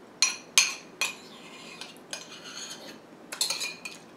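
Metal spoon clinking against and scraping a ceramic soup bowl while the last of the soup is spooned up. There are several sharp clinks with a brief ring, a longer scrape about two seconds in, and a quick run of clinks near the end.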